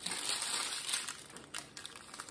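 Small plastic bags of diamond-painting drills crinkling as they are picked up and handled: a dense rustle for about the first second, then a few lighter crinkles.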